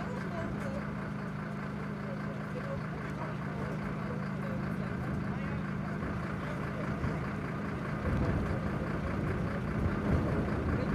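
An engine running steadily with a low, even hum. About eight seconds in, a louder low rumbling noise joins it.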